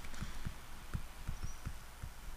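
Stylus writing on a tablet, heard as a run of faint, irregular low knocks as the pen strikes and moves across the surface.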